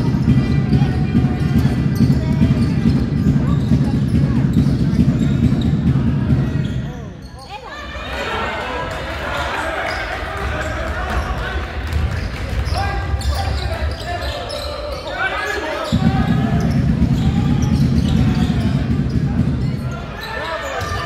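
Basketball game in a reverberant gym: the ball bouncing on the wooden court, sneakers squeaking, and players and spectators calling out. A heavy low rumble covers the first third and the last few seconds.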